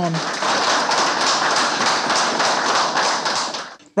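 A small group of people applauding in a room: dense steady clapping that cuts off abruptly near the end.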